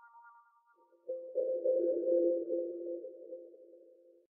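Electronic logo jingle: a bright chime dies away at the start, then about a second in a held synth chord of two low notes comes in and fades out near the end.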